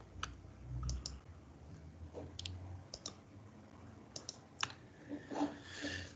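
Faint, irregular clicking of a computer mouse, a dozen or so clicks, some in quick pairs, over a low background hiss.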